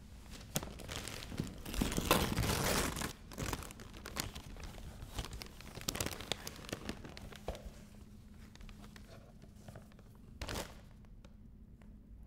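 Gift-wrapping paper being torn and crumpled as a present is unwrapped, loudest in a long rip about two seconds in, followed by smaller crinkles and rustles and one short rustle near the end.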